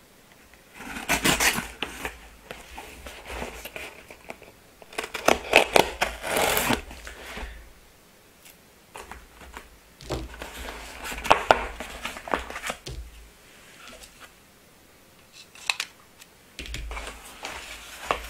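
A covered utility knife slitting the packing tape on a small cardboard box, in several bursts of scraping and cutting with short pauses between. Near the end the cardboard flaps are pulled open.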